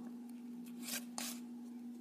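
Yu-Gi-Oh! trading cards sliding against each other as the front card of a hand-held stack is moved to reveal the next one: two short papery swishes about a second in, over a steady low hum.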